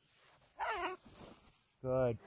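A short, high, wavering vocal call about half a second in, then a brief lower voice near the end.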